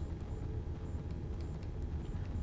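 Room tone: a steady low hum with faint hiss, and no distinct events.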